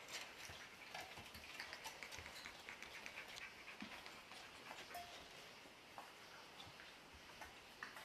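Faint, quick clicking of four-week-old puppies' claws on a tile floor as they walk about, thinning out after about halfway.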